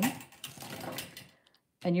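Thin craft wire being handled and bent by hand, a light scraping and clicking of the wire ends that stops about a second and a half in.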